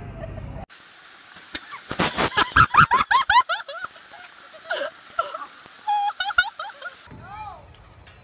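A person laughing hard in quick repeated bursts over a steady rush of flowing creek water.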